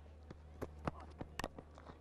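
Several short, sharp knocks and clicks from a cricket pitch as a ball is bowled and played with the bat, the strongest about one and a half seconds in, over a steady low hum.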